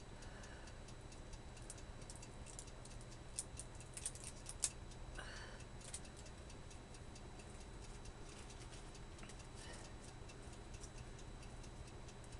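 Small plastic packaging of eyeliner pencils being worked open by hand: faint, rapid little ticks and clicks, a sharper cluster of clicks a few seconds in, then a short rustle, over a low steady hum.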